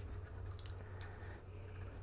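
Faint, scattered light clicks of a plastic string winder being fitted onto a guitar tuner peg and the string being handled at the headstock, over a low steady hum.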